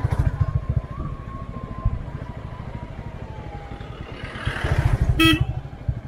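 Motorcycle engine running steadily on the move, with one short horn beep about five seconds in.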